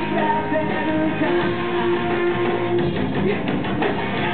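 Live band music with strummed guitar to the fore, a long note held through the middle and a run of sharp hits near the end.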